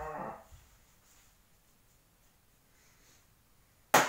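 A man's laughter trailing off, then a quiet stretch of room tone, and one sharp, loud knock near the end.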